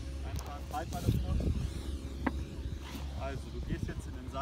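Brief, indistinct speech from people on a running track, with a steady low wind rumble on the microphone and a single sharp click a little past the middle.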